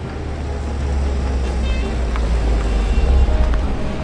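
Car engine rumbling, growing louder to a peak about three seconds in and then easing off, with music underneath.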